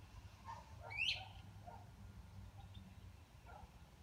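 Faint bird calls: one brief upward-sweeping chirp about a second in, the loudest sound, and a few short soft calls scattered through, over a low steady hum.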